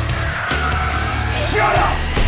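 Dramatic trailer score with a steady low pulse, and over it a long, high-pitched yell that wavers in pitch and breaks off near the end.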